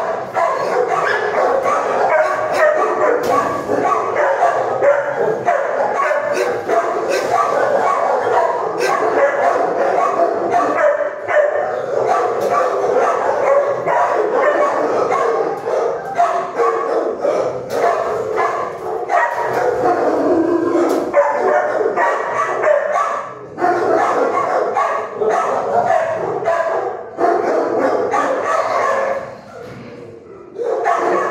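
Many shelter dogs barking and yipping over one another without a pause, with a brief drop-off right at the end.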